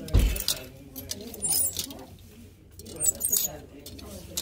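Plastic clothes hangers clacking and rattling as they are pushed along a metal clothing rail, with a loud knock just after the start and further bursts of clicking about a second and a half in and around three seconds in. Voices murmur in the background.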